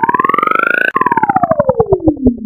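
Synthesized, siren-like pulsing tone sweeping upward in pitch with its pulses quickening, then just before the one-second mark dropping suddenly and gliding back down as the pulses slow. It is the electronic sound effect of an animated Pepsi logo sting.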